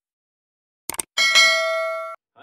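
Two quick clicks, then a bright bell ding that rings for about a second and cuts off: a subscribe-button click and notification-bell sound effect.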